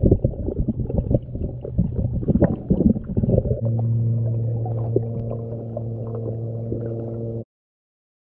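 Muffled underwater sound picked up by an action camera in its waterproof housing: irregular knocks and water movement for the first few seconds, then a steady low hum with a few clicks, cut off abruptly to silence near the end.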